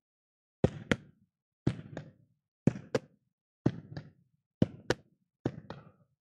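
A bouncing ball rallied back and forth by hand across a gym's wooden floor: six pairs of quick impacts, about one pair a second, each pair the ball bouncing once on the floor and being struck with a hand.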